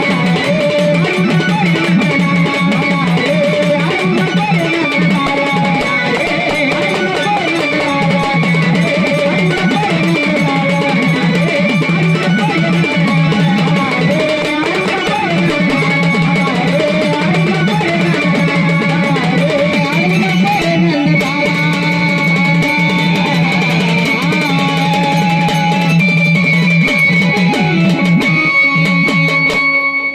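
Live Marathi gavlan folk music: a plucked string instrument plays a winding melody over a steady sustained backing, cutting off at the very end.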